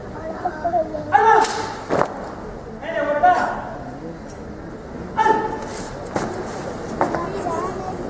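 Loud shouted military drill commands, three short drawn-out calls, answered by sharp knocks as the ranks of soldiers stamp and move on command.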